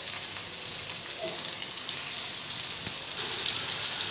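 Batter-coated Maggi noodle pakora balls deep-frying in hot oil in a kadai: a steady sizzle.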